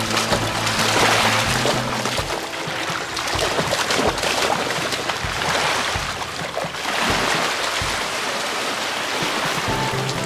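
Golden retriever puppy splashing as it wades through shallow lake water, with small waves washing onto a pebble shore. Background music is clearest in the first two seconds, before the splashing takes over.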